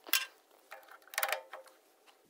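Drill press chuck key turning in the chuck, its gear teeth meshing with the chuck's toothed collar to tighten the jaws: a few quiet metallic clicks, with a quick run of clicks about a second in.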